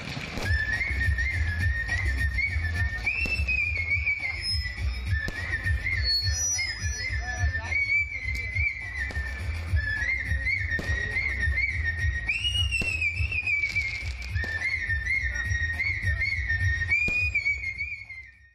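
A man whistling a song melody into a stage microphone. The tune is quick and ornamented, with rapid trills and short upward slides, and it is heard over backing music with a heavy low bass.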